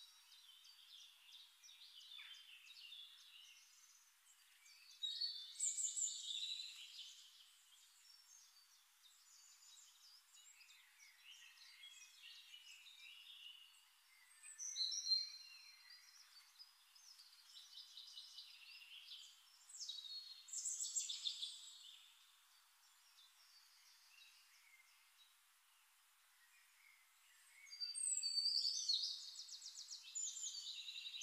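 Faint birds chirping and trilling, in spells of a few seconds with quieter gaps between them.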